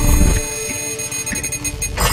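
Electronic computer-interface sound effects over music: fine, rapid digital ticking with steady beeping tones. A loud, deep sound cuts away about half a second in, leaving the ticking quieter.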